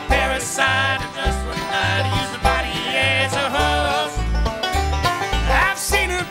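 Bluegrass string band playing an instrumental break. A fiddle leads with sliding, wavering notes over banjo and guitar, and an upright bass plays a steady beat of about two notes a second.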